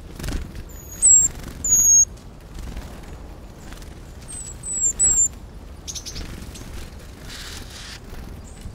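Great tits giving short, high, thin call notes in two bursts of three, one near the start and one around the middle.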